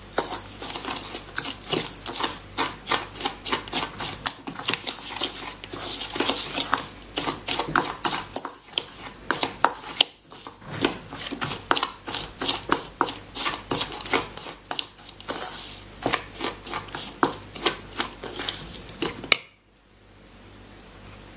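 A metal spoon stirring crumbly cheesecake-crust mixture in a stainless steel bowl, making rapid, continual scraping and clinking against the bowl. The sound stops abruptly near the end.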